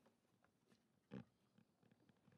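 Near silence: room tone, with one brief faint voiced sound from the man at the microphone a little over a second in, like a short grunt or throat noise.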